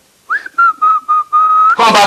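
A person whistling a short run of quick notes on nearly one high pitch, after a brief upward slide at the start. The whistling stops as speech begins near the end.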